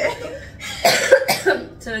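A woman coughing, two short coughs about half a second apart, between bits of speech.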